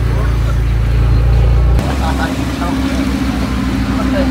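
A car engine running at idle close by, a loud low rumble that changes abruptly about two seconds in to a lower, pulsing note, with faint voices of people around.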